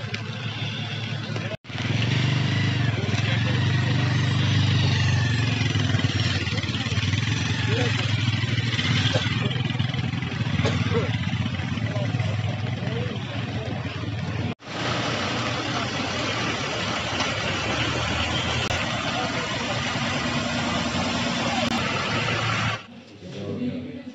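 Street noise on a wet road: a vehicle engine running with passing traffic and indistinct voices of people nearby. The sound is broken twice by short, sudden dropouts, about a second and a half in and again near the middle.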